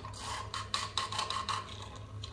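Screwdriver tip rubbing on the spinning shaft of a Wester WCP 25-60 G wet-rotor circulation pump through its open screw hole, a scratchy rasp in quick irregular strokes over a steady low hum. The pump has started and runs freely after standing idle.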